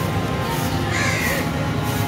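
A crow cawing once, about a second in, over a steady low drone.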